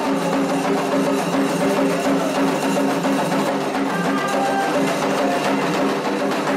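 Candomblé atabaque drums playing a steady ceremonial rhythm.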